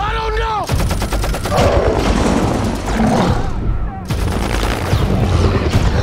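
Film battle sound: a man's brief yell, then about a second in, rapid machine-gun fire from helicopter door guns. The shots come in dense bursts over a constant low rumble.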